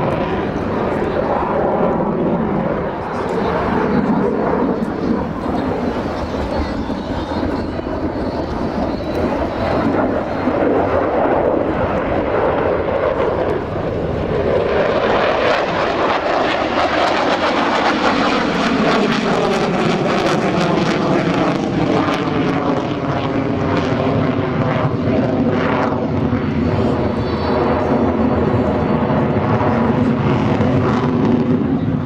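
A Sukhoi Su-30MKM twin-turbofan fighter flying an aerobatic display: loud, continuous jet noise throughout. From about halfway, as the jet passes close, the sound takes on a sweeping, falling pitch.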